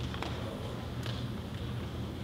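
Room tone of a large hall: a steady low hum with a few faint short ticks or rustles, one just after the start and one about a second in.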